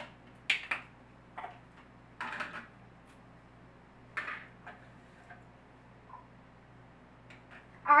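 Light clinks and knocks of glasses and bottles being handled on a kitchen countertop: a few short, scattered sounds with quiet gaps between, mostly in the first half.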